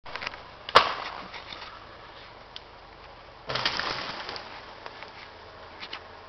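Wood breaking: one sharp crack a little under a second in, then about three and a half seconds in a longer crackling crash of many small snaps, like branches and brush breaking.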